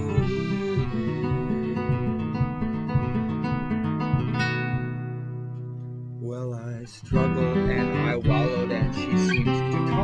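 Classical guitar and piano accordion playing an instrumental passage of a slow sea-shanty-style song. A long held chord fades out about five or six seconds in, and the playing comes back louder about seven seconds in.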